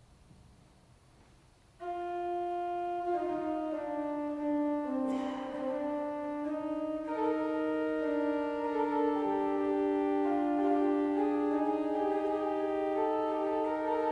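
Quiet room tone, then about two seconds in a C.B. Fisk pipe organ begins a slow piece of long held notes, more voices entering one after another, its reedy cromorne stop carrying the solo line.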